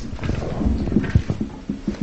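Handling noise from a handheld roving microphone: irregular low knocks and rubbing as it is passed and gripped.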